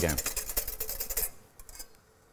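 Wire balloon whisk beating egg yolks in a glass mixing bowl, with rapid, even scraping strokes against the bowl that stop about a second and a half in. The yolks are being whisked into a béarnaise base.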